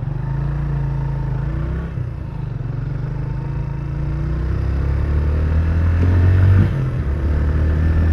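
Motorcycle engine pulling away and accelerating, heard from the rider's seat. The engine note climbs gradually and drops back sharply about two seconds in and again near seven seconds, as it changes up through the gears.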